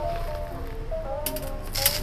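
Soft background music with sustained melodic notes. About a second in comes a quick run of small clicks and rattles, the sound of granular pon substrate spooned into a plastic cup.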